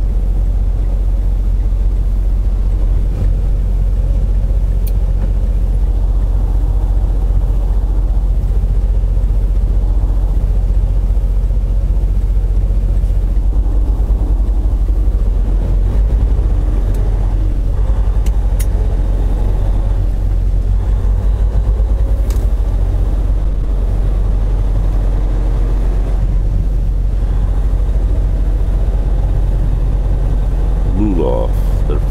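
Semi truck's diesel engine running steadily under way, a continuous low rumble heard from inside the cab, with a few faint clicks.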